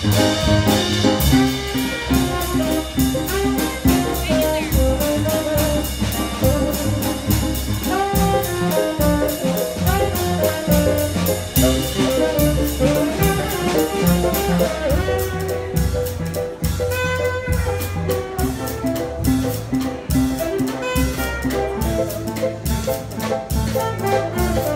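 A small jazz combo playing live: saxophone carrying the line over piano, bass and drum kit, with a steady cymbal rhythm.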